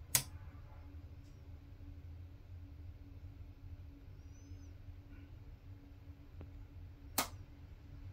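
EG4 6000XP inverter's output being switched back on: a sharp click at the start and another about seven seconds later, over a faint steady low hum, as the inverter comes fully on and its idle draw rises to about 1.2 amps.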